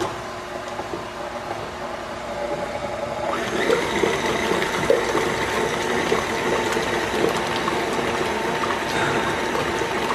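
Electric tilt-head stand mixer running, beating buttermilk into the banana-bread mixture in its metal bowl. The motor hum starts suddenly and gets louder a little over three seconds in.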